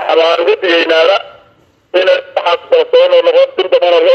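Speech only: a man speaking Somali into a microphone, with a brief pause about a second in.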